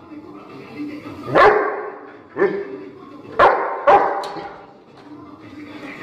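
A Rottweiler barking: four loud barks about a second apart, the last two close together.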